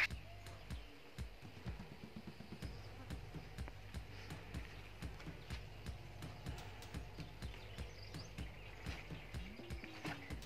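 Faint, irregular footsteps on garden ground, two to three soft steps or knocks a second, over a low steady hum.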